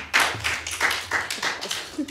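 A small group of people clapping, a dense run of irregular hand claps.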